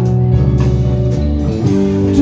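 A live rock band playing an instrumental passage without vocals: electric and acoustic guitars, bass and a keyboard sustain chords over drums, with the chord changing about halfway through.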